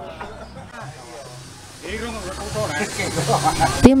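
Background location sound: a steady hiss with faint, distant voices of people talking, growing louder about halfway through.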